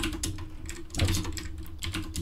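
Typing on a computer keyboard: a quick run of keystrokes in irregular clusters.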